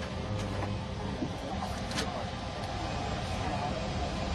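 Steady airliner cabin noise, an even rushing hum, with a single short click about two seconds in.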